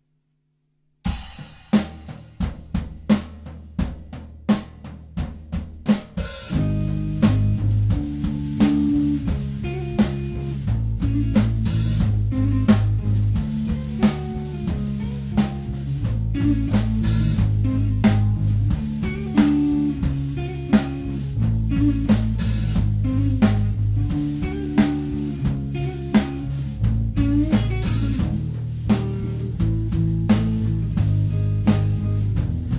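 Live rock band, instrumental. After about a second of silence the drum kit leads in alone for about five seconds. Then electric bass and electric guitar join the drums in a steady, repeating groove.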